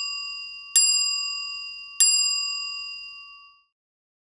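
Bright bell-like ding sound effect struck three times, about a second and a quarter apart. Each strike rings out and fades slowly, and the last one dies away after about three and a half seconds.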